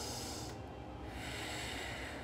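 A woman breathing during exercise: two soft breaths without pitch, one about half a second in and one near the end, over steady low room noise.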